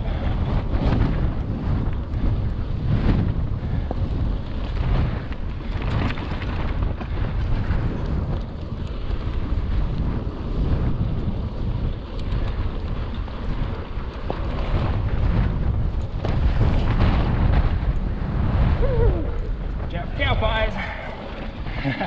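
Wind buffeting the microphone of a handlebar-mounted action camera as a hardtail mountain bike rolls along a dirt singletrack: a continuous rough rush of wind over low rumbling tyre and trail noise.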